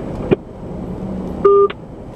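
Car hands-free phone system sounding its call-ended tone, a short two-step electronic beep about one and a half seconds in, over a steady car-cabin hum. A single sharp click comes shortly before it.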